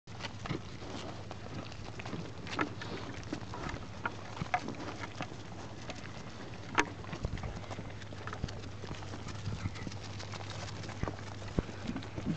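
Sheep eating feed pellets close up: irregular crunching and clicking as the pellets are chewed and nosed about, with one sharper knock just before the seventh second.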